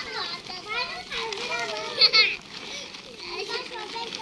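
Young children's high voices chattering and calling out at play, with one loud shout about two seconds in.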